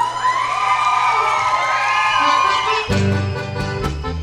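A group of voices shouting and cheering together, with long held cries, then about three seconds in traditional gaúcho folk dance music starts up with a steady beat.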